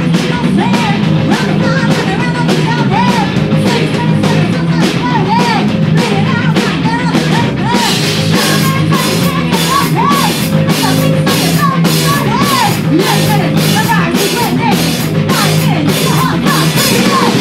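A punk rock band playing live: distorted electric guitars, bass guitar and a drum kit keeping a steady, driving beat, with a woman singing lead. The drumming gets busier about halfway through.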